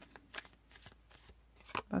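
Tarot cards being handled and drawn from a hand-held deck: a few soft flicks and rustles of card stock.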